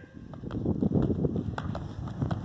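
Wind buffeting the microphone, with light, quick taps of a sprinter's footfalls on a rubber track.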